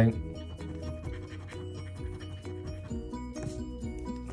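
A coin scraping the latex coating off a lottery scratch-off ticket in quick, short strokes, with background music playing underneath.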